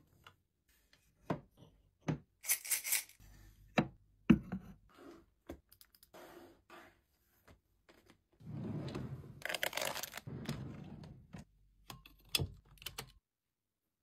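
Small desk objects being handled and set down, with scattered light clicks and knocks. About eight seconds in, a highlighter rubs across notepad paper for about three seconds, followed by a few more quick taps.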